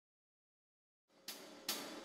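Silence for about a second, then two sharp cymbal hits about half a second apart, each ringing briefly, as a drum-led music track begins.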